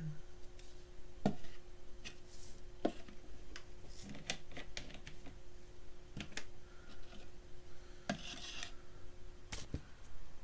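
Handling noises of a paper cup and soda can being picked up and moved on a table: scattered knocks and clicks with a couple of brief rustling hisses, over a steady faint hum.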